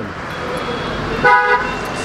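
A vehicle horn gives one short, steady toot about a second and a quarter in, over a background hum of street traffic.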